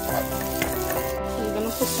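Chopped onion and garlic sizzling steadily as they fry in butter in a pan.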